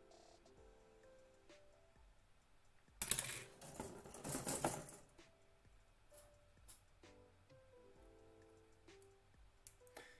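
Plastic model-kit runner being picked up and handled over a paper instruction sheet: a rustling, clattering burst about three seconds in that lasts about two seconds, then a few light plastic clicks. Faint background music with soft sustained notes plays underneath.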